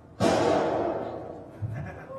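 A plastic bottle blowing apart with a sudden loud bang, set off after a "fire in the hole" warning, its sound dying away over about a second and a half.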